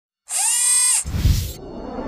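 Intro sound effects: a high, drill-like whirring that sweeps up in pitch and holds for about three quarters of a second, then a low boom about a second in that dies away.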